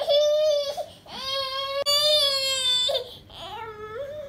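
A baby crying in three wails while a sweater is being pulled on him: a short cry, then a long steady high wail of nearly two seconds, then a shorter rising cry near the end.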